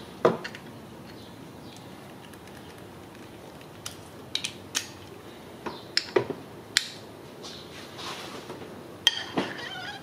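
Metal hand tools clinking: a Torx socket and long breaker bar being fitted and worked on a camshaft sprocket bolt, giving scattered sharp clicks, several in a cluster midway and more near the end.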